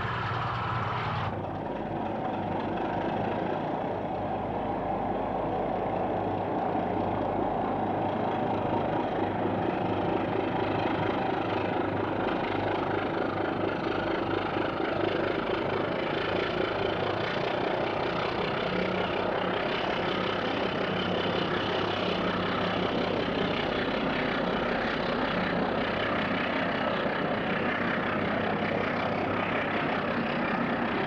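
Diesel locomotive engine running with a steady drone as a train passes, the sound changing slightly about a second in.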